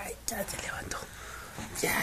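Soft whispering voice, breathy and quiet, with a louder whispered breath near the end.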